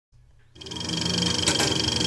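Film-projector sound effect for an intro: a steady whirring rattle with a high whine, fading in after about half a second of silence.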